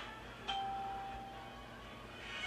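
A single bell-like chime: one sharp ding about half a second in that rings on as a steady tone for about a second and fades.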